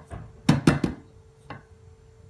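An upturned metal cake pan knocked against a plate to loosen the baked cake inside: three quick knocks about half a second in, then one more about a second later.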